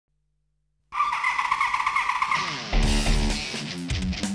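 After a moment of silence, a high, rapidly fluttering vehicle sound plays for about a second and a half. A falling sweep then leads into loud theme music with a heavy bass, which comes in a little before halfway.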